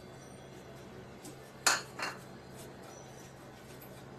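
Two short clinks of kitchenware against a nonstick frying pan, about a third of a second apart, the first louder, over a faint low hum.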